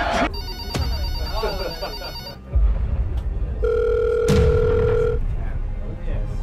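Telephone call sounds: an electronic ringing pattern for the first two seconds, then a single steady beep lasting about a second and a half. A deep low hit falls between the two, and a voice can be heard faintly.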